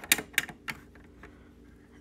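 A few short plastic clicks from LEGO pieces as a small flap on the model is lifted by hand, all within the first second.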